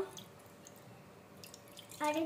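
Water poured from a small steel cup into a non-stick frying pan: a faint trickle and splash with a few drips.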